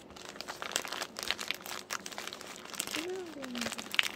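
Packaging being handled: irregular crinkling and rustling as a parcel is unwrapped.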